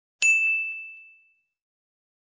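Notification-bell chime sound effect for a subscribe animation: a single bright ding about a fifth of a second in, ringing out and fading away within about a second.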